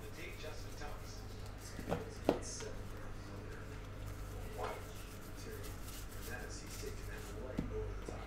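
Trading cards being thumbed through by hand: soft sliding and flicking of card stock, with a few light clicks, over a steady low electrical hum.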